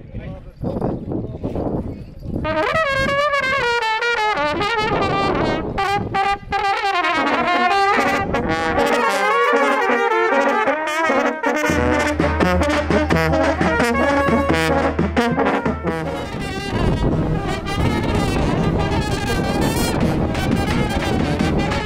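A Serbian brass band of trumpets and larger bell-front horns playing a tune while marching, coming in loudly about two and a half seconds in over crowd noise.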